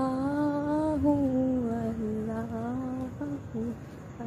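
One voice chanting "Allah" in a slow, drawn-out devotional melody (dhikr), holding long wavering notes. The first note breaks off just before a second in, and shorter notes follow near the end.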